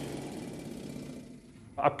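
Pneumatic rock drill on a mine drill rig's feed boom running with a fast, even hammering clatter that fades away about a second and a half in.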